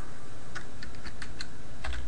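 Computer keyboard keys tapped about half a dozen times at an uneven pace, typing a short word into a text field.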